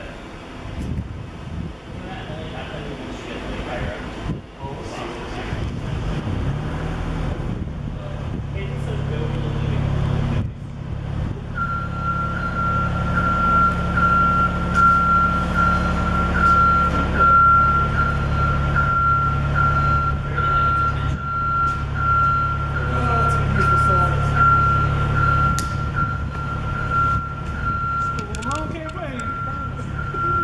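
A vehicle engine running with a steady low hum from about six seconds in. About twelve seconds in it is joined by a high electronic warning tone that holds steady and pulses a little faster than once a second, a vehicle's motion or reversing alarm.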